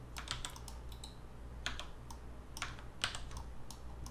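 Computer keyboard keys and mouse buttons clicking at an irregular pace, about a dozen separate clicks, over a faint steady low hum.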